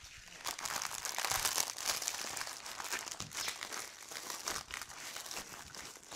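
Clear plastic packaging and paper being handled, crinkling in a dense, continuous run of small crackles.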